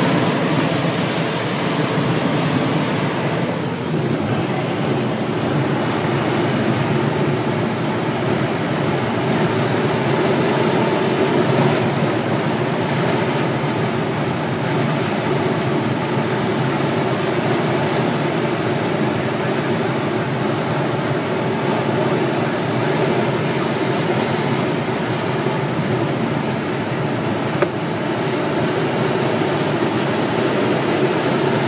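Steady rush of air streaming around a glider's cockpit in flight, an even continuous noise, with a single sharp click near the end.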